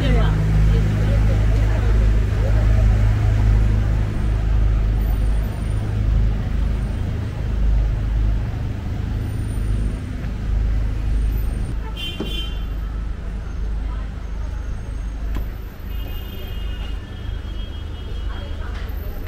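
City street traffic: a steady, heavy engine rumble from vehicles close by, with passers-by talking in the background. A vehicle horn toots briefly about two-thirds of the way through, and a longer high tone sounds near the end.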